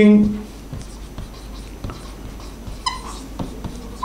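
Marker pen writing on a whiteboard: faint scratching strokes, with a brief high squeak from the marker about three seconds in.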